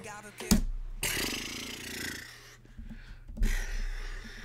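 A man's breathy, wordless exhales, the first about a second long, each begun by a sharp knock.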